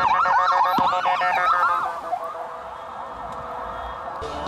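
Ambulance siren in a fast yelp, about five rising-and-falling sweeps a second, loud for the first two seconds and then quieter.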